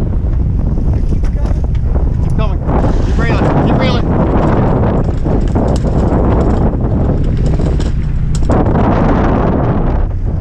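Wind buffeting the microphone on a boat at sea, over a steady low rumble of the boat and the water. Brief rising pitched sounds come through in the middle.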